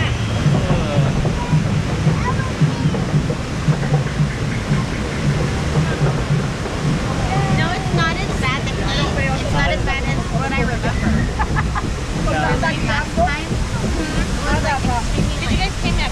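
Steady low rumble of a river-rapids raft ride, water rushing around the raft, with riders' voices chattering over it from about halfway through.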